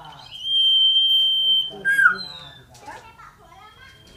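Common iora (cipoh) singing: one long, steady, high whistle held for over a second, then a short falling note and a brief higher note. A fainter held whistle comes near the end.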